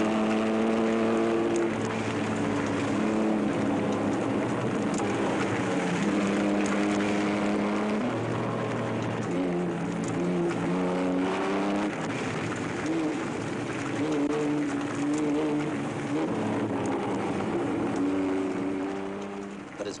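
Rally car engine being driven hard down a gravel mountain pass. The engine note holds a steady pitch for a second or two, then jumps or slides to a new pitch as the revs change, over a hiss of tyres on loose gravel.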